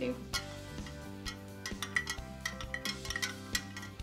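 A metal spoon stirring food coloring into water in a drinking glass, clinking against the glass a dozen or so times at an uneven pace, over soft background music.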